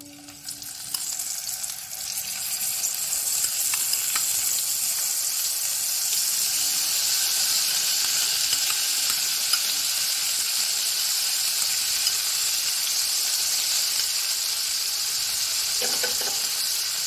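Onion paste sizzling in hot oil with whole spices in a nonstick frying pan. The sizzle builds over the first couple of seconds as the paste goes in, then holds steady.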